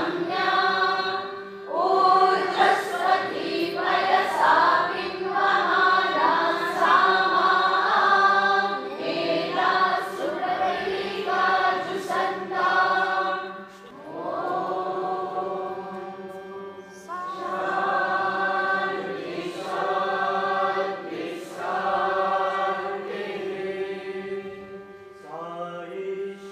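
A congregation singing a devotional bhajan together in phrases, over a steady harmonium drone.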